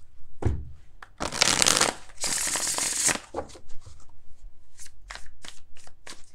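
A tarot deck being shuffled by hand: a soft thump near the start, two longer rushes of cards sliding about a second and two seconds in, then a run of quick short card flicks.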